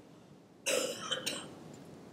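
A person briefly clearing their throat, a short rough sound in two quick parts lasting about half a second, starting a little over half a second in.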